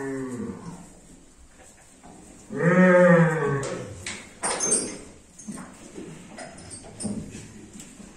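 Horned bull mooing: the end of one call right at the start, then one full call of about a second, starting about two and a half seconds in and dropping in pitch as it ends. A few short clinks follow.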